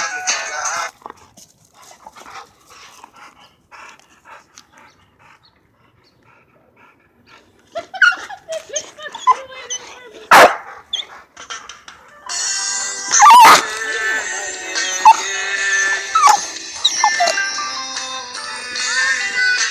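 Dogs barking and yipping while they grab at a stick, with a loud sharp sound about ten seconds in. Background music stops about a second in and comes back after about twelve seconds.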